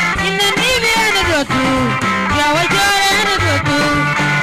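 South Sudanese dance music played live, with plucked guitar lines weaving over a bass line and a steady beat.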